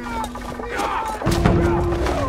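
Film soundtrack: a low, steady held drone of music with men's shouts and cries sliding over it as the warriors charge.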